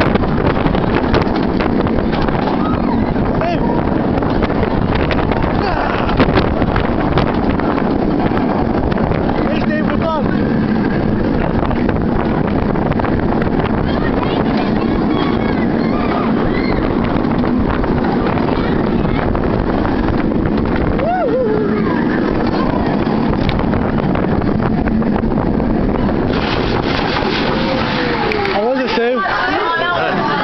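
Wind buffeting the microphone over the steady rumble of an inverted steel roller coaster train running at speed through its loops and corkscrews, with a few brief rider yells.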